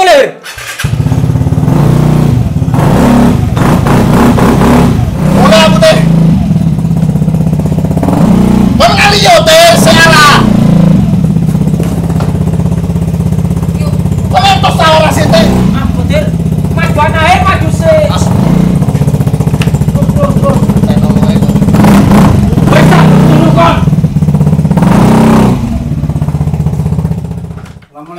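A motor scooter's engine starts up about a second in and runs loudly with a steady low drone, cutting off just before the end. Voices call out over it several times.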